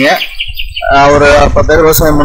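A bird chirps in a quick run of short high notes in the first second. Then a loud voice with a wavering pitch comes in.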